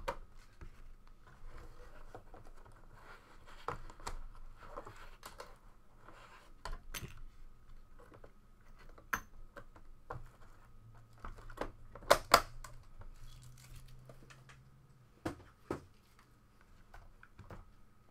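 Handling of a Panini Flawless aluminium card briefcase and its contents: metal latches clicking open, then scattered clicks, knocks and light rustling as hard plastic card holders are lifted out and set down. Two sharp knocks about twelve seconds in are the loudest.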